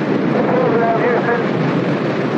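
Space shuttle lifting off: a steady, loud rushing roar of its rocket exhaust, with a faint voice rising through it in the middle.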